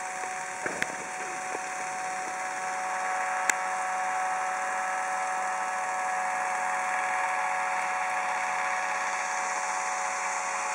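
Steady whir of an electric fan motor with several whining tones, growing a little louder about three seconds in. A few sharp plastic clicks come from the walking model's linkages, one in the first second and a louder one about three and a half seconds in.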